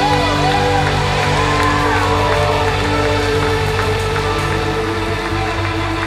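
A live worship band holds a sustained closing chord on keyboard pad and guitars. In the first couple of seconds a voice glides up and down in a wordless ad-lib over it. Scattered clapping from the room begins in the last second or two.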